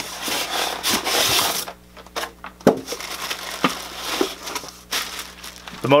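Plastic and cardboard packaging rustling and crinkling as a servo motor is dug out of its shipping box, loudest for the first second and a half or so, then a few light separate knocks and rustles as the plastic-wrapped motor is lifted out.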